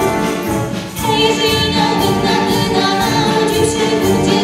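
Wind band with flutes playing a Polish Christmas carol (kolęda) in a reverberant church, with singing voices joining in. The melody pauses briefly for a phrase break just under a second in.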